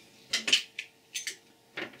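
Several short, light clicks and rustles of hands handling the freshly cut output cable of an Xbox 360 power supply, exposing its bundle of wires.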